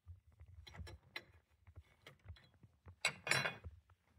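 Small metallic clicks and scrapes of an open-end wrench handled on a router's collet nut, with a louder scraping clatter about three seconds in as the wrench is laid down on the router table's insert plate.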